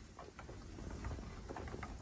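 Raccoons' paws and claws making scattered light clicks and taps against the glass door and the wooden deck boards.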